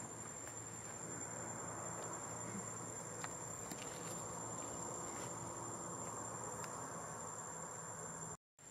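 Outdoor insect ambience: a continuous high-pitched insect buzz over a steady background hiss, with a few faint ticks.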